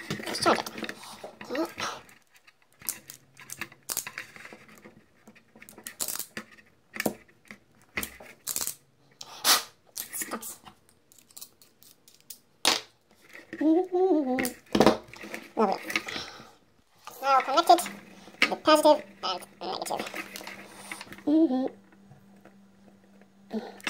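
Short clicks, knocks and rustles of a plastic vacuum cleaner housing and its wiring being handled on a table. A man's voice is heard a few times, without clear words, in the second half.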